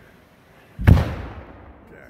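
A single explosive charge, lit by fuse and blasting cap, going off in a clogged culvert pipe to blast the blockage out. It is one sharp bang about a second in, sounding like a big old shotgun, and a rumble trails off after it.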